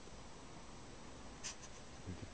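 Faint steady background hiss with one brief, high scratchy scrape about one and a half seconds in.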